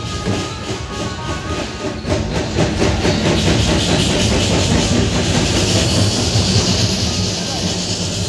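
Loud, dense din of a street crowd at a celebration, with a fast, rattling rhythm running through it. A high hiss grows stronger over the second half.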